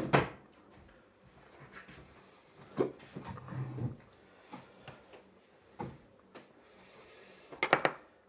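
Scattered light clicks and knocks of a metal spoon scooping ice cream from a plastic tub, with a short low groan a little past three seconds in and a quick run of clicks near the end.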